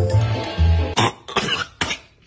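Background music with a steady bass beat, cut off about a second in by a man coughing three times in quick succession. He is choking on a raw egg yolk dropped into his mouth while he slept.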